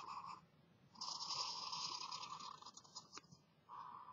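Felt-tip marker drawing lines on paper, its tip scratching in strokes: a brief one at the start, a longer one of about two seconds from about a second in, and another starting near the end.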